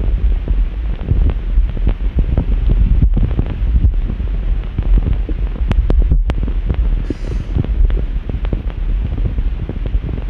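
Soundtrack of a sound-and-light experiment clip played back over the hall's speakers: a loud, dense low noise full of crackles and clicks.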